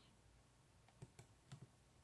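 Near silence: room tone with four faint, short clicks in the second half.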